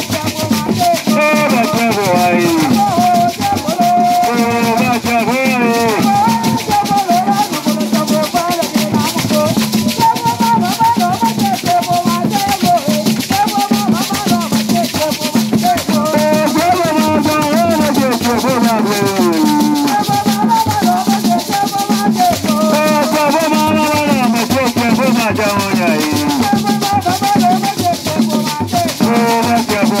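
Ewe Agbadza music: rope-tuned hand drums beaten with a steady pulse under loud, continuous shaken rattles, with a group of voices singing the melody over them.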